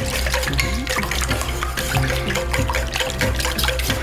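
Wire whisk beating a runny egg-and-milk mixture in a stainless steel bowl: wet sloshing with repeated clicks of the whisk against the bowl, over background music.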